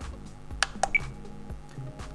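Two sharp clicks and a short high beep from a TBS Tango 2 radio controller as its menu buttons and thumb wheel are pressed to step into a menu, over faint background music.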